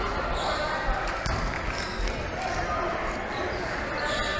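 A basketball bouncing on a hardwood gym floor, with thumps about a second in and again about two seconds in, over a murmur of voices in a large echoing hall.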